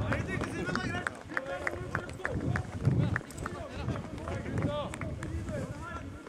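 Distant shouts and calls of footballers on the pitch, overlapping and indistinct, with a few sharp knocks scattered through.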